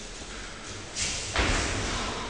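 A heavy thud about a second and a half in, inside a burst of rustling noise that fades away.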